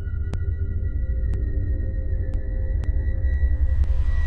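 Ambient horror-film score: held electronic tones over a deep low rumble, pierced by sharp ticks every half second to a second.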